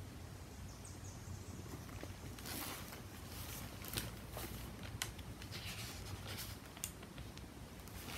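Quiet rustling and scattered light clicks from a hardcover picture book being handled and its pages turned.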